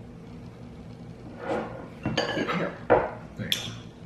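A metal scoop knocking and clinking against a glass bowl and the gelato container as gelato is scooped out. There are several short knocks and clinks in the second half, the loudest about three seconds in.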